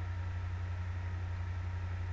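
Steady low hum with a faint even hiss.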